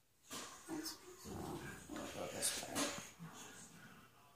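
A dog whimpering in several short sounds.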